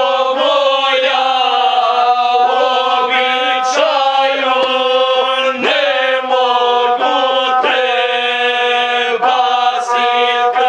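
Several men singing a Serbian folk song together in harmony, to the accompaniment of a gusle, a single-string bowed folk fiddle. A steady low drone holds under the voices while the melody moves above it.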